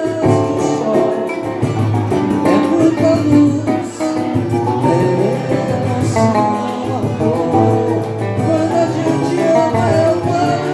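Live acoustic music: a male voice singing to strummed acoustic guitar and a smaller plucked string instrument.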